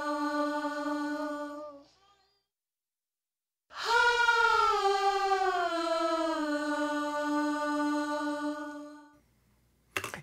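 Stacked backing vocals, a man's and a woman's voices blended, hard-panned left and right, with EQ, compression and heavy distortion, singing long held notes. One note fades out about two seconds in. After a short silence a second long note starts high and slides down in pitch, ending shortly before the close.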